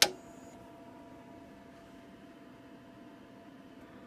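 Monoprice MP Select Mini 3D printer being switched on: one sharp click at the start, then a faint steady hum from the powered-up printer.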